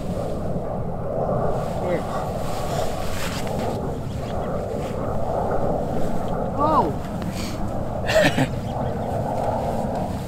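Steady wind buffeting the microphone, a continuous low rumble outdoors. A few brief voice sounds come through near the end.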